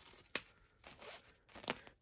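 Scissors snipping through ribbon: one sharp snip about a third of a second in and another near the end, with a faint rustle of fabric between.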